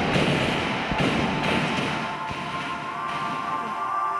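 Background music with a sustained tone building in its second half, with several dull thuds in the first couple of seconds.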